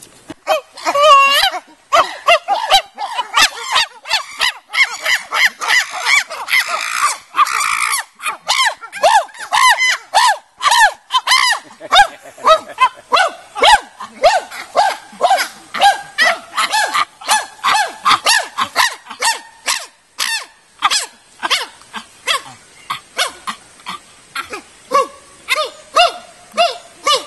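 Chimpanzee calling: a long, loud run of short rhythmic calls, about two to three a second, each rising and falling in pitch, with the most intense stretch in the first several seconds.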